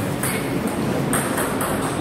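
A few sharp clicks of table tennis balls striking tables and bats, over the steady noise of a large hall.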